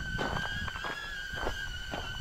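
HOVERAir selfie drone hovering close by, its propellers giving a steady high-pitched whine that wavers slightly in pitch.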